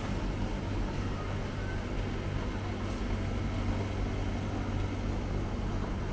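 Steady low mechanical hum over a constant background din, with no distinct knocks or voices.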